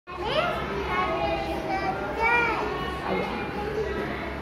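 Young children's voices: a child talking, with other children chattering around him.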